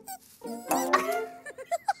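Cartoon music with a cute creature-voice sound effect from a small fluffy animal character, followed near the end by a string of quick, high giggles.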